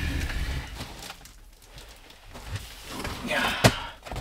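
A heavy wall-mount lithium battery being lifted and handled by hand, with low scuffing of its case, then one sharp knock near the end as it meets the wall and its mounting bracket.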